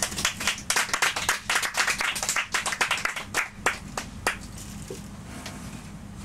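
Small audience clapping. The clapping is dense for about three seconds, then thins to a few scattered claps and dies away.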